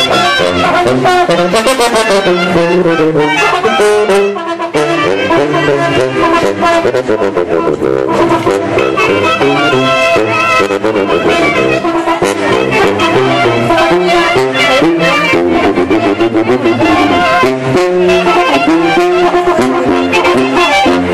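Mexican brass band with sousaphone, trumpets and drums playing a tune, the brass carrying the melody over a steady drum beat.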